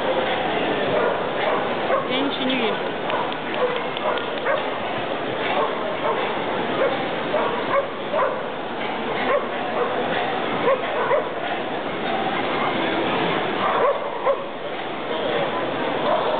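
Many dogs barking and yipping in short calls over continuous crowd chatter.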